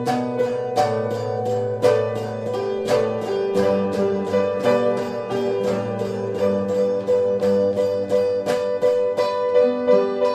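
Live instrumental rock jam on electric guitars and piano, with a quick, even run of plucked notes over held chords.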